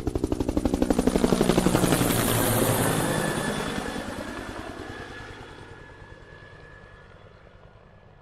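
Rhythmic chopping in fast, even pulses, like a helicopter's rotor, loudest about two seconds in and then fading steadily away.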